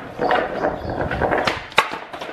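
Skateboard wheels rolling over a hard shop floor, then one sharp clack near the end as the rider loses his balance on the board.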